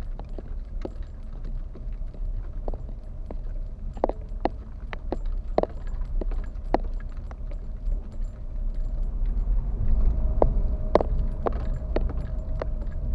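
Inside a car driving slowly over a rough, cracked concrete road: a steady low rumble of engine and tyres, with irregular clicks and knocks from bumps and rattles. It grows a little louder near the end.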